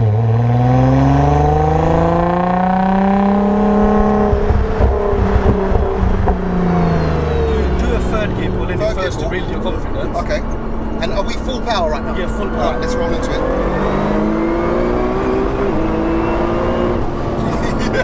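Twin-turbo V6 of a 1576 bhp Nissan R35 GT-R under hard acceleration: after an upshift the revs climb for a few seconds. Off the throttle the revs fall with a crackling flutter from the turbo wastegates, more crackles follow, and near the end it pulls hard again while a thin whine rises above the engine.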